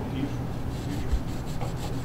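Rubbing and scraping handling noise close to the microphone as the handheld camera is moved, with a dull thump about a second in.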